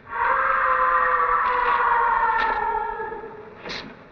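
A long, echoing scream from off in the distance, starting suddenly, holding one pitch while sinking slightly, then fading after about three seconds.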